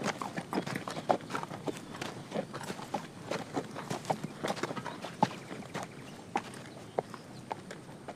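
Hooves of a led donkey clip-clopping at a walk on a gravel path, mixed with people's footsteps: an uneven run of short knocks, a few each second.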